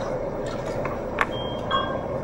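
Steady background noise with a few faint clicks and two short high beeps near the middle.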